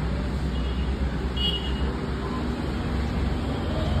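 Steady low rumble under an even hiss, with a brief high double tone about a second and a half in.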